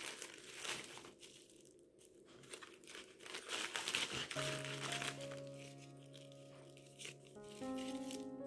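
Plastic zip-top bags crinkling as they are handled, in irregular bursts. From about halfway through, background music with held notes comes in under the crinkling.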